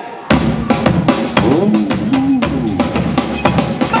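A live percussion band strikes up suddenly about a third of a second in, with a bass drum and other drums beating a fast, steady rhythm under a low melodic line.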